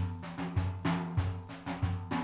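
Large frame drum played on its own in a slow, uneven rhythm: about six deep strokes, each ringing on.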